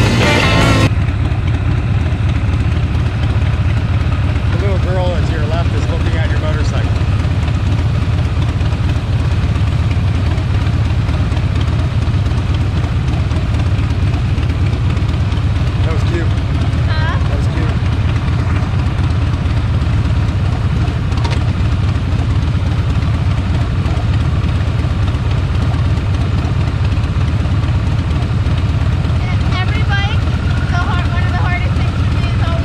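Harley-Davidson motorcycle engines giving a steady low rumble, mixed with wind rush, as two bikes ride together. Background music cuts off about a second in.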